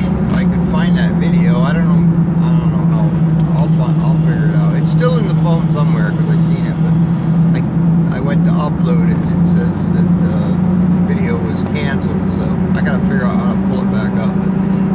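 Steady low drone of a pickup truck's engine and road noise heard inside the cab while driving, with the pitch stepping up slightly about ten seconds in; a man talks over it.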